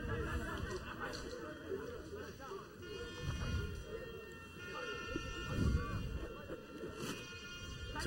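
Quiet stadium crowd ambience: scattered distant voices and calls from a small crowd, with a faint held tone in the middle for about two seconds.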